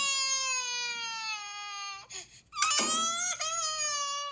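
Cartoon children crying: a long high wail that sags slowly in pitch, then after a short break a second wail begins a little past halfway.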